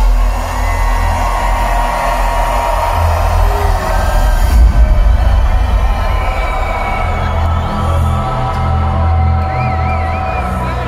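Loud hardstyle music over a large venue's sound system, heavy in the bass, with a crowd cheering and whooping through it.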